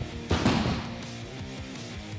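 Background guitar music with a steady beat. About a third of a second in comes one short, loud thud-and-scuff as several people land from a jump onto a gym mat and drop into a squat.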